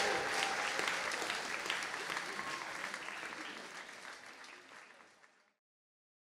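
Small audience applauding by hand, fading out steadily and cutting to silence about five seconds in.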